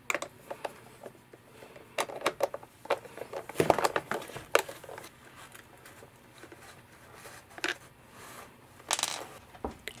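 A screwdriver clicking and scraping in the screw recesses of a Swiffer WetJet's plastic body as small screws are backed out, with scattered taps and knocks from handling the plastic housing.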